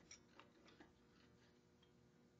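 A few faint metallic clicks in the first second as a metal deck-clearance fixture is lowered over the head studs onto a VW cylinder barrel, then near silence.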